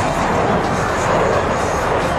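F-22 Raptor's twin Pratt & Whitney F119 turbofan engines heard as a loud, steady rushing jet noise as the fighter manoeuvres overhead.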